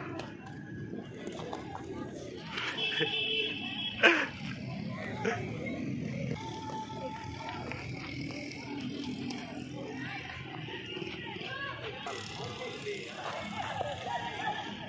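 Outdoor chatter of a group of people's voices, with a brief high tone just before three seconds in and a single sharp knock about four seconds in, the loudest moment.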